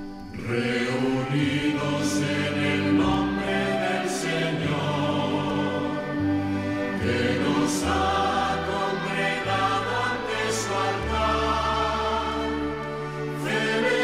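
Sung hymn: a choir singing over orchestral accompaniment with a stepping bass line. A new phrase comes in about half a second in, and another near the end.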